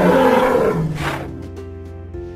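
A beast-like roar sound effect, lasting about a second and fading out, voicing a toy triceratops in a fight, over steady background music.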